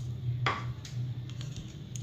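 A few light clicks and taps of kitchen utensils at a cooking pot: one sharper tap about half a second in, then fainter ticks, over a low steady hum.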